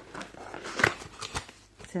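Cardboard packaging of a boxed handheld sewing machine being opened by hand: the box sliding and its flaps scraping and rustling in a few short scuffs, the loudest a little under a second in.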